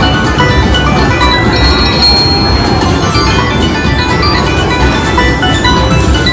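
Bell-like electronic slot-machine music over a steady beat, from a three-reel slot machine and the casino floor around it, while the reels spin.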